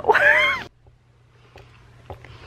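A woman's short, high-pitched squealing laugh, rising and then falling in pitch, lasting about half a second. It is followed by a much quieter stretch with a faint low steady hum.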